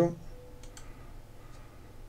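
A few faint computer mouse clicks, two close together about half a second in and a fainter one later, over quiet room tone.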